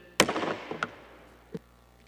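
A single sharp strike of a wooden gavel on the desk, picked up by the desk microphone, ringing out briefly, followed by a couple of faint knocks: the chair banging the gavel to suspend the hearing.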